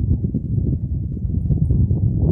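Wind buffeting the microphone: a loud, steady low rumble with no clear rhythm.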